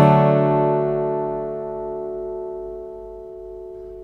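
Intro music: a single acoustic guitar chord ringing out and slowly fading away.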